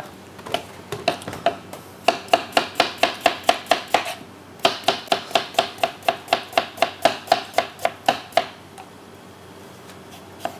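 Chef's knife slicing a peeled potato into thin rounds on a plastic cutting board, the blade knocking on the board with a slight ring. A few scattered taps, then two quick, even runs of about six strokes a second with a short pause between.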